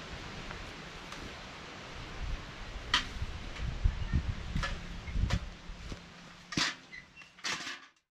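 Linden branches rustling as the flower clusters are picked off by hand, with a handful of short, sharp snaps; the loudest two come near the end. A low rumble runs through the middle.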